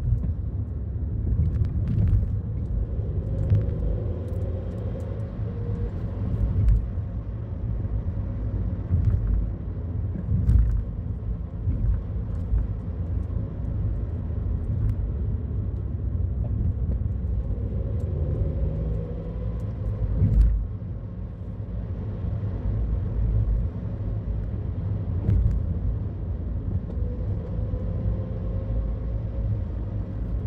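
A car driving, heard from inside the cabin: a steady low rumble of engine and tyre noise, with a few brief knocks, the loudest about two-thirds of the way through.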